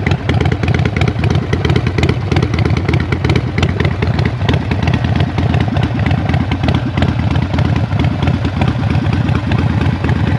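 Harley-Davidson Sportster 48's 1200 cc air-cooled V-twin idling steadily through Vance & Hines Shortshot staggered exhaust pipes, a loud, even run of exhaust pulses.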